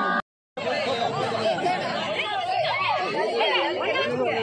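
A crowd of villagers, mostly women and children, chattering at once with many overlapping voices, broken by a brief gap of silence about a quarter of a second in.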